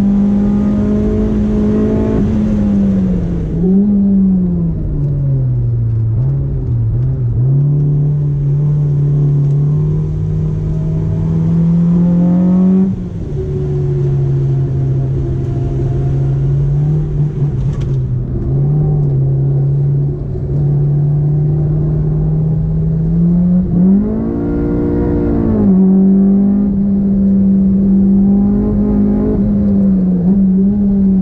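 Honda S2000 AP1's stroked F20C four-cylinder engine running at track speed, heard from inside the cabin, held at steady middling revs with lifts rather than revved out. Its pitch dips and recovers a few seconds in, drops sharply about 13 seconds in, then rises and falls briefly near 25 seconds before settling a little higher.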